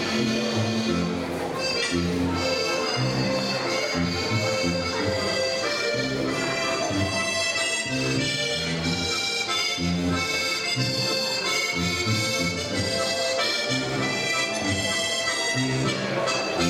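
Lively traditional folk dance music with an accordion-like melody over a steady, regularly repeating bass, running without a break.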